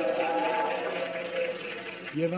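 A crowd of voices chanting and shouting together in sustained, held tones, fading off toward the end.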